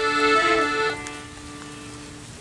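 Estella piano accordion holding a chord, which thins to a soft, steady drone of a couple of low notes about a second in.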